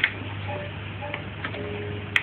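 A baby's hand knocking on a plastic activity toy on a baby walker's tray: a sharp clack at the start, then a few light taps and brief short toy notes, over a steady low hum.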